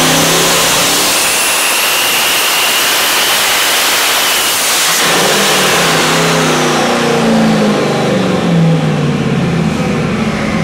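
Loud 427 cu in twin-turbo small-block Chevy making a full-throttle pull on an engine dyno, with a high turbo whine climbing and holding. About five seconds in, the pull ends: the whine drops away in falling pitch as the turbos spool down and the engine revs come back down.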